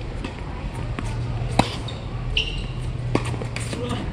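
Tennis ball struck by rackets in a doubles rally: two sharp pops about a second and a half apart, the first the louder, over a low steady hum.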